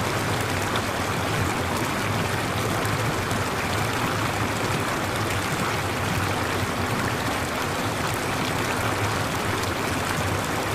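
Steady, unbroken rushing noise like a flowing stream, holding the same level throughout.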